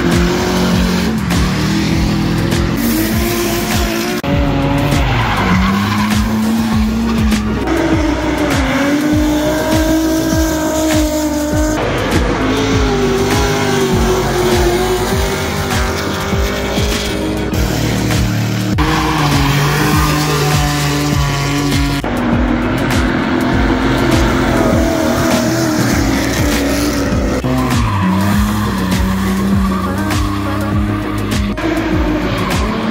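Drift cars sliding sideways, tyres screeching and engines revving hard, their pitch rising and falling. The sound shifts several times as different cars take over.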